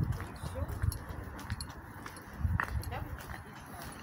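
Footsteps of a person walking on paving stones, heard as faint scattered clicks over a low rumble of handling noise from a phone held while walking.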